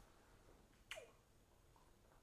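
Near silence: room tone, with one short faint click about a second in that drops quickly in pitch.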